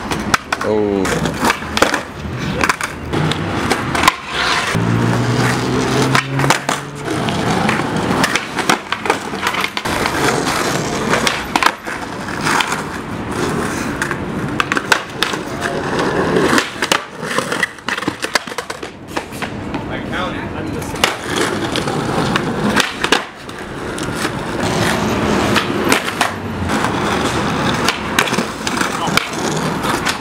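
Skateboards rolling over smooth stone tiles, with repeated sharp clacks of boards popping, landing and slapping the ground during flip-trick attempts.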